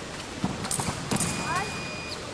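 Large sports hall background with a few sharp knocks in the first second or so, then a steady high beep lasting about a second, over distant voices and a steady hall hum.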